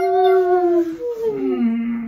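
Long, drawn-out human vocal sounds: a held note sliding down in pitch, then a lower note held on, made by people pulling together into a hug.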